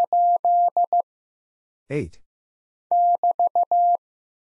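Morse code keyed as a single steady beep at 15 words per minute: the number 8 (dah-dah-dah-dit-dit) ends about a second in, a recorded voice says "eight", then the prosign BT (dah-di-di-di-dah) is sent from about three seconds in.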